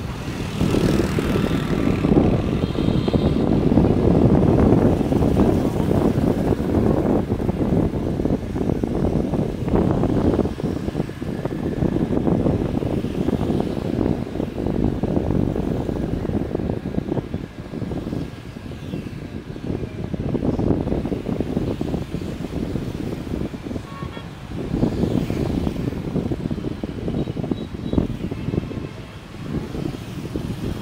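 Heavy motorbike traffic heard from within the flow of the street: a steady mix of small engines and road noise that swells and fades as bikes pass. A few short horn beeps sound about two seconds in and again near the end.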